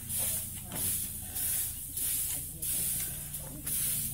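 Straw brooms and a rake swishing through threshed rice grain spread on the ground, in regular strokes about every half-second or so.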